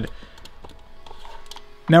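Faint background music with a few light plastic clicks as LEGO plates are pressed onto bricks.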